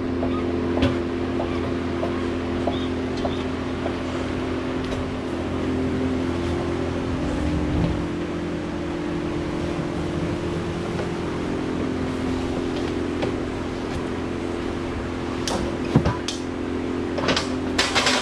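Steady hum of a running machine, holding a few fixed tones, with a few sharp clanks from a hand pallet jack moved over concrete, one about a second in and several near the end.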